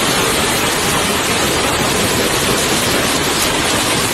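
Torrent of muddy floodwater rushing down a street: a loud, steady rush of water.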